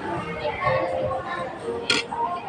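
Background voices, including children's, mixed with music, and a single sharp click near the end, likely cutlery against the plate.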